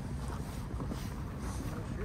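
Wind noise on the microphone while walking, with faint footsteps on hard-packed, icy snow.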